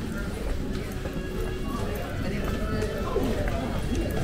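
Footsteps and rolling suitcase wheels clicking over a tiled floor, under a background of many people talking and music.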